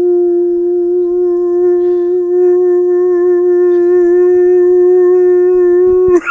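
A person's voice holding one long, loud yell on a single steady pitch. It cuts off suddenly near the end.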